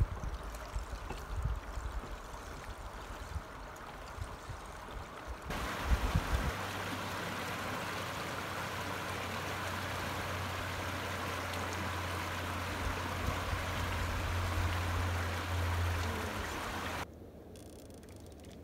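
Running water of the partly frozen Beatton River, a steady rush as it flows past rocks and shore ice, with wind buffeting the microphone in the first few seconds. About five and a half seconds in, the rush becomes louder and steadier. About a second before the end, it drops much quieter.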